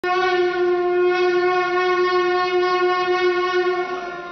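Conch shell (shankh) blown in one long, steady horn-like note at a fixed pitch, sounded for the temple aarti; it drops in level just before the end.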